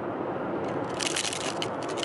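Steady tyre and road noise inside a moving car's cabin at highway speed. About halfway through comes a run of crackling clicks and scrapes: handling noise from the phone camera being turned round.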